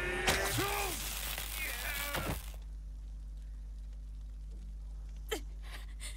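Action sound from an animated fight scene: a strained, bending cry over a burst of crashing, shattering noise, which cuts off abruptly about two and a half seconds in. After that there is only a low steady hum and one sharp click near the end.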